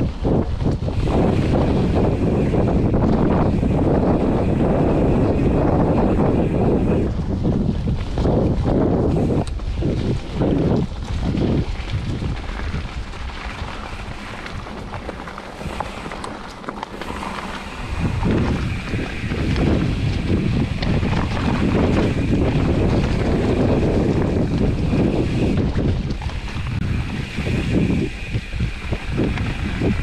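Wind buffeting the microphone of a handlebar-view camera on a moving mountain bike, mixed with the rumble of its tyres on a dirt trail. It eases off for several seconds around the middle, then comes back loud.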